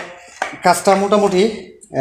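A man talking, with a short clatter of metal on wood about half a second in as a ceiling fan's stator is set down on a wooden board.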